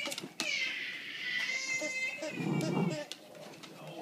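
A long high-pitched squeal that falls slightly in pitch, lasting about two and a half seconds, as a dog chews a plush toy. A short low, rough sound comes near its end.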